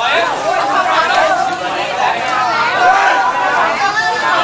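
People talking, with several voices overlapping in chatter.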